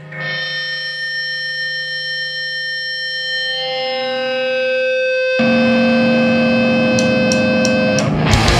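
Electric guitars through effects and amplifiers hold long sustained notes, shifting pitch a little over halfway through. About five seconds in a louder distorted chord rings out. Three quick high ticks come near the end.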